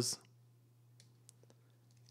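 A few faint, short clicks of a computer keyboard being typed on, about a second in, in an otherwise quiet room.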